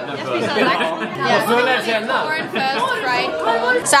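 Several people talking at once: steady, overlapping dinner-party chatter.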